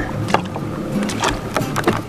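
A boat's motor running with a steady low hum, under a haze of wind and water noise, with a few short clicks.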